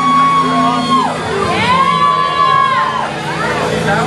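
Live jam band playing: two long sustained lead notes, each sliding up into pitch, held, then falling away, over bass and drums.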